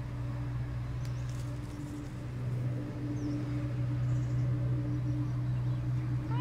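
A steady low motor hum, with a few faint high chirps over it.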